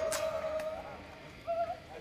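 Electric guitar whose amplified signal is sent into sausages instead of a loudspeaker, so only its faint unamplified string sound is heard: one held note fading away, then a short, slightly higher note near the end.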